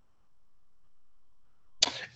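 A pause in a man's speech: near silence with a faint steady hum, then a short sharp sound near the end, just before he starts speaking again.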